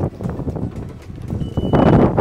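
Wind rumbling on the microphone, then near the end a broad rushing noise as a van's sliding side door is pulled open along its track.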